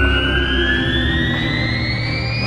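Synthesized intro music: a riser, with a tone climbing slowly and steadily in pitch over a low steady drone.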